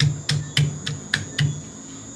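A glass bottle's base pounding ginger on a wooden cutting board to smash it: about six evenly spaced dull knocks, roughly three or four a second.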